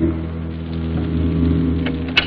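A low, steady drone holding one pitch with its overtones, part of a film soundtrack, with a faint click near the end.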